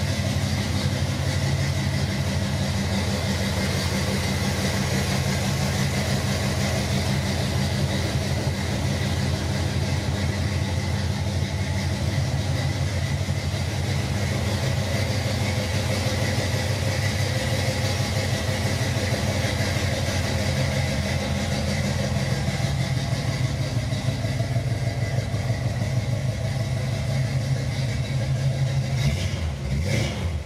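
Pontiac 400 cubic inch V8 engine idling steadily; the sound stops near the end.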